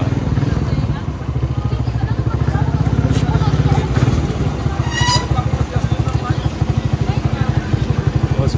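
Small motorcycle engine of a Filipino tricycle running under way, a fast, even low pulsing heard close from the sidecar. A brief high-pitched tone sounds about five seconds in.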